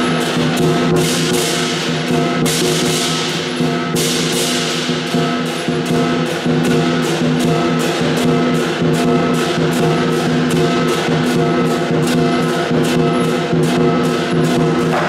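Lion dance percussion: a large Chinese lion drum beaten in a steady, fast rhythm, with cymbals and a gong ringing over it. There are a few bright cymbal crashes in the first few seconds.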